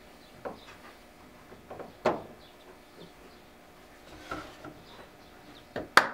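Plastic calf-feeding bottles and rubber nipples being handled on a steel counter: a few scattered knocks and clunks as the nipples are fitted and the bottles set down, the loudest about two seconds in and a sharp one just before the end.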